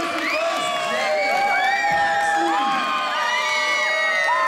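Large crowd cheering loudly, with many voices overlapping in long held yells and whoops. It is the sound of spectators celebrating a fighter's win.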